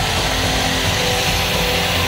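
Background music with electric guitar, over an electric angle grinder running steadily at full speed with a hissing whine.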